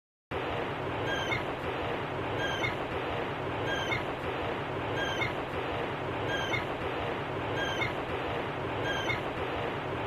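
A steady hiss with a short, slightly falling chirp that repeats regularly, about every second and a half.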